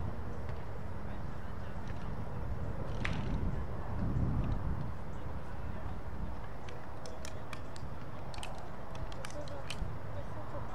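Open-air field ambience: a steady low rumble of outdoor noise with faint distant voices. Near the end comes a quick run of short, sharp ticks.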